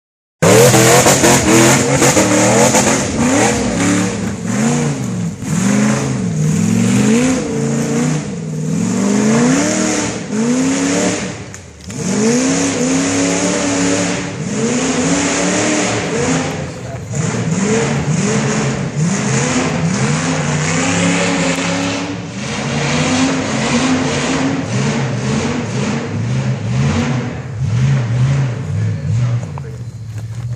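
Tube-frame rock buggy's engine revving hard and repeatedly under load as it climbs a steep dirt hill, the pitch rising and falling every second or two as the throttle is worked, with a brief dip about twelve seconds in.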